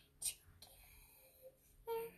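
A girl whispering quietly under her breath, with a short hiss about a quarter second in and her voice coming in near the end.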